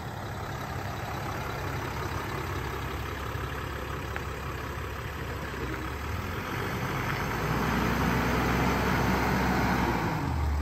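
A vehicle engine running with a steady low drone. It grows louder from about seven seconds in, as a deeper hum comes in.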